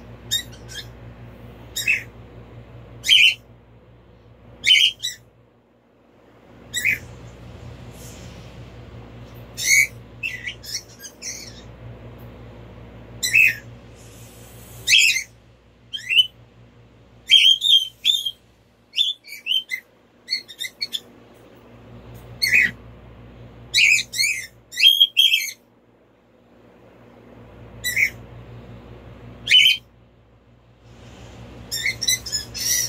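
A pet bird calling repeatedly in short, sharp chirps and squawks, some in quick runs of several. A low hum runs underneath and drops out a few times.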